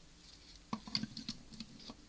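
Faint small clicks and taps of hard plastic toy parts being handled, as fingers move and adjust a Transformers action figure, a run of them in the second half.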